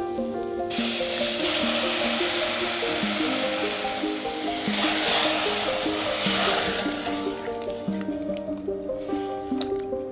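Canned chopped tomatoes hitting a hot saucepan of fried onions and spices, sizzling loudly: the hiss starts about a second in, swells around the middle and dies down near the end as they are stirred in. Background instrumental music plays throughout.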